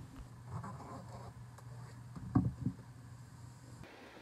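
Cloth rustling and boots scuffing as a pair of boots is pulled on, with two short thumps a little past halfway, over the steady low hum of a space heater.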